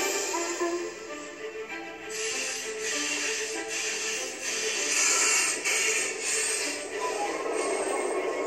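Background music with held, stepping melodic notes; from about two seconds in, irregular bursts of hiss come and go over it.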